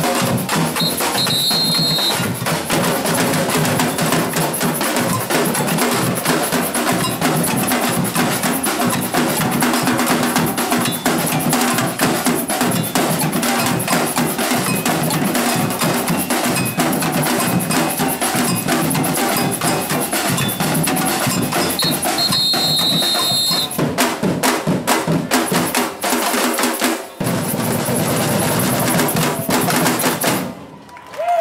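Batucada drum group playing a driving samba rhythm on surdos, snare drums, tamborims and shakers, with a short high whistle blast about a second in and again around 22 seconds. Near the end the bass drums drop out for a run of sharp accented breaks and a brief stop before the full group comes back in.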